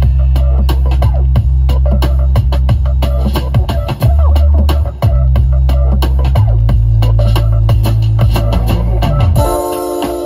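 A song with heavy, sustained bass notes and a steady drum beat plays loudly through a car audio system powered by an AudioControl LC-6.1200 six-channel amplifier, heard inside the truck cabin. Near the end the bass drops out and steady keyboard chords take over.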